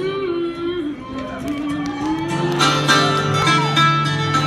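Two acoustic guitars playing a live song intro, a held strummed chord under a picked lead line; the playing fills out and gets louder about two seconds in.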